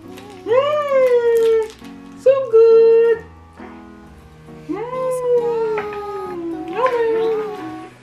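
A high voice making four long, gliding vocal sounds, each swooping up and then sliding down or holding, the longest about two seconds, over steady background music.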